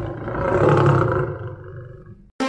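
A deep lion-like roar, swelling to a peak about a second in and then dying away, laid over a house cat's wide-open mouth as a comic sound effect.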